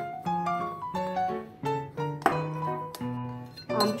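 Background piano-like keyboard music playing a melody of held notes, with a steel spoon clinking now and then against a glass bowl as dry spice masala is stirred.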